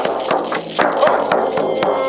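Hand-held frame drum beaten in a fast, even rhythm, about four to five beats a second, over a steady held tone.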